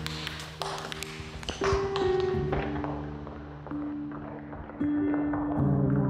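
Tap dancing: tap shoes striking a hardwood floor in quick runs of sharp taps, thickest in the first two seconds and sparser after, over background music with long held notes.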